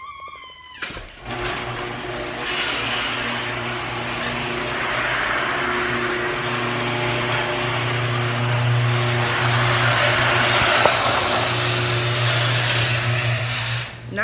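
Electric garage door opener motor running as the door rolls up: a steady low hum under a noisy whir. It starts about a second in and cuts off abruptly near the end, when the door reaches its stop.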